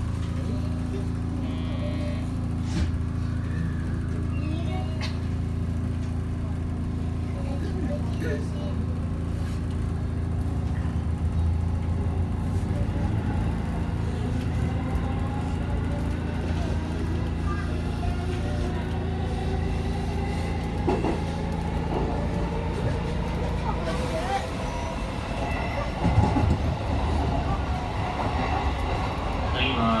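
Electric commuter train running, heard from the cab: a steady low hum with a motor whine slowly rising in pitch as it gathers speed. The low hum drops away a little before the end, and there is a single sharp knock shortly after.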